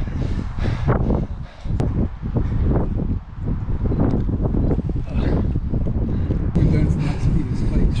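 Wind rumbling on the microphone, with an exhausted man's groans and heavy breathing after an all-out mile run.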